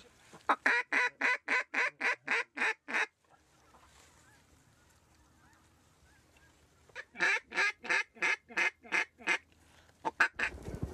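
A hunter blowing a duck call. It gives two runs of about ten quick, even quacks, roughly four a second, with a quiet pause of a few seconds between them in which faint bird calls can be heard.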